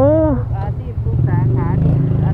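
A vehicle engine running at idle, a low steady rumble that grows louder from about halfway through, with brief voices over it.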